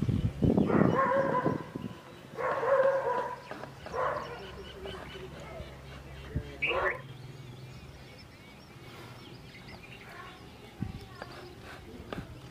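A dog barking in several loud bursts during the first seven seconds, the last one a short yelp, over a low steady hum.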